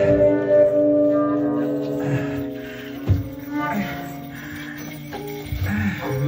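Free improvised music from a live ensemble: steady held tones for the first couple of seconds that then thin out and quieten, a sharp knock about three seconds in, and sliding voice-like sounds near the end.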